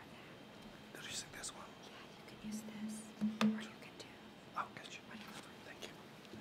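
Quiet whispered talk between two people close to a podium microphone, with a short low hum and a sharp click about three and a half seconds in.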